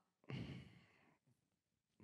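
A man sighing: one breathy exhale straight into a handheld microphone held at his lips, starting about a quarter second in and fading out within under a second.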